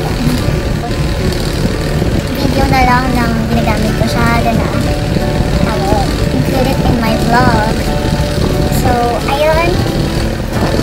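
A woman talking in short phrases over a steady low background rumble.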